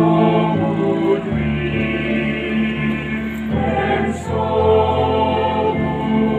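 A choir singing a slow hymn in harmony, holding long chords that change every second or two.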